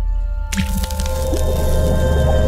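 Logo intro sting: a deep bass drone under held music tones, with a sudden splashy liquid splat hitting about half a second in and ringing on as a noisy wash.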